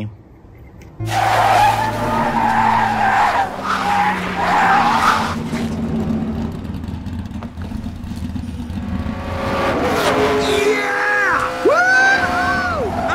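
Film-soundtrack race scene: stock-car engines running loudly from about a second in, with tires skidding. Curving squeals of rising and falling pitch come near the end.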